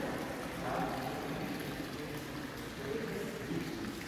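Indistinct voices of other visitors in a large room, faint and distant, over a steady background noise.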